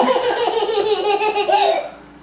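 A long, high-pitched laugh in rapid pulses that stops just before the end.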